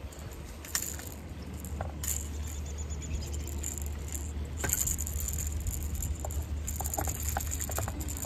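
Metal fishing pliers clicking and jingling against the treble hooks of a lipless crankbait in scattered short bursts as the hooks are worked free from a landed bass.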